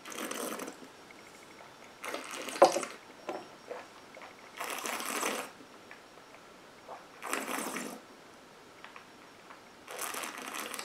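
A taster holding a sip of gin in his mouth, with five short, breathy rushes of air through the lips and nose about every two and a half seconds as he works the spirit over his palate. A short, sharp click comes about two and a half seconds in.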